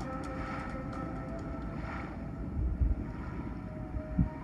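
Sea ambience of wind and water under faint steady music tones, with a loud, deep low thud nearly three seconds in.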